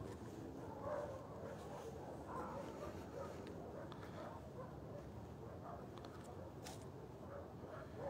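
Faint, scattered barking of distant dogs over low outdoor background noise, with a few light clicks.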